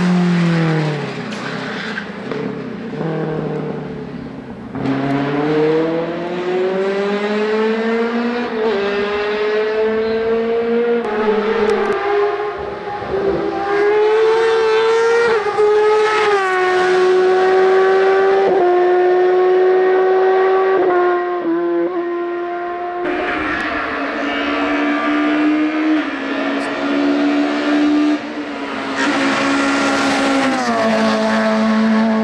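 High-revving race car engines at full throttle, one car after another. The pitch climbs and then drops in steps at each upshift, and the sound changes abruptly as one car gives way to the next.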